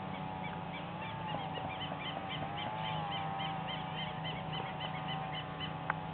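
A small engine running steadily with a low hum and a mid-pitched whine that rises and falls slightly twice, most likely a quad bike's. Over it a bird repeats a short chirping call about three times a second for several seconds, and a sharp click comes near the end.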